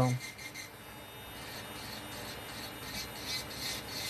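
Electric nail drill running a cuticle safety bit against an acrylic nail at the cuticle line: a soft, uneven grinding and rubbing as the bit files the acrylic.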